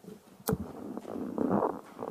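Microphone handling noise: a sharp click about half a second in, then irregular rumbling and bumps as the microphone is handled.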